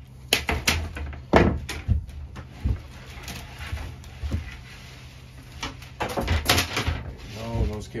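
Diagonal cutters snipping a fiber optic cable's strength members, a run of sharp clicks and snaps, followed a few seconds later by a cluster of knocks as the cutters and cables are handled and set down.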